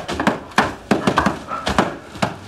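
Filled sandbags being heaved up and thumped into place on a stack across a window opening, a run of irregular thuds, about eight in two seconds.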